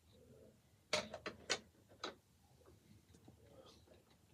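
A few quiet clicks and pops, a cluster about a second in and one more near two seconds: lips smacking on the stem as a freshly lit tobacco pipe is puffed.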